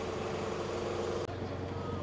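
A vehicle engine idling: a steady hum with a held tone, which drops away about a second in, leaving general street noise.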